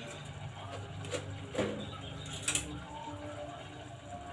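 A spoon and a plastic salt container being handled while salt is spooned out: a few light clicks and knocks, about one, one and a half and two and a half seconds in, over a low steady hum.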